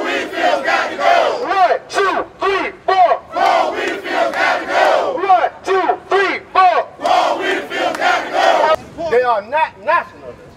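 A crowd of protesters chanting a rhythmic call-and-response, a leader shouting 'one, two, three, four' and the crowd answering 'Paul Wiedefeld's got to go'. The shouts thin to a few voices about nine seconds in.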